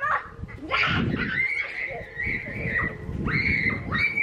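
Children shrieking and squealing in long, high-pitched cries, several in a row, while running about on grass.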